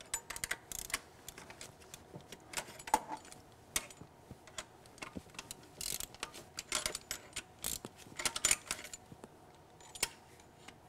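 Ratchet wrench clicking in short, irregular bursts as it is swung back and forth, loosening the fuel injector hard-line nuts on a Mercedes five-cylinder diesel.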